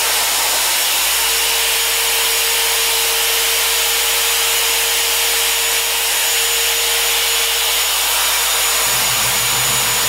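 Clover CT9000 long-throw polisher running free at its maximum speed setting: a loud, steady electric-motor whine with a high hiss, the motor already up to speed. A lower throb joins near the end.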